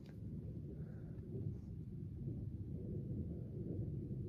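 Faint, steady low rumble of a distant airplane passing overhead.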